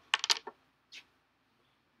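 A quick cluster of light clicks and rattles, then one more click about a second later, as a charger plug and cable are handled and plugged in.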